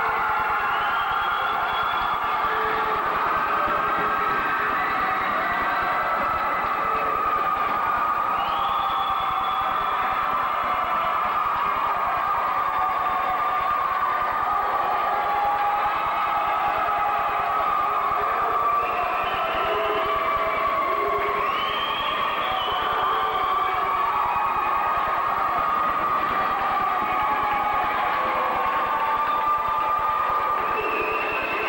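Recorded music for a color guard routine, played over a loudspeaker in a gymnasium and picked up by a camcorder microphone; sustained, gently gliding melodic tones at an even level throughout.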